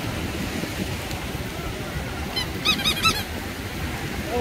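Steady wash of small surf and beach-crowd murmur. A little past halfway, a quick run of about six short, high squeaky calls lasting about a second stands out as the loudest sound.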